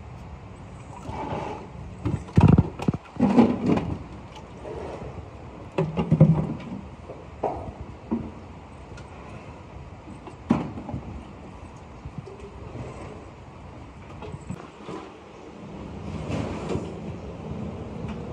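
Irregular knocks and thuds of work being handled in a ceramic casting workshop, over a steady low hum; the loudest cluster comes about two to four seconds in, with single knocks around six and ten seconds.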